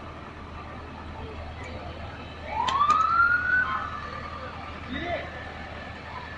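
An emergency-vehicle siren gives one short wind-up about two and a half seconds in. It rises in pitch for about a second, holds briefly, then dies away. Two sharp clicks come near its start.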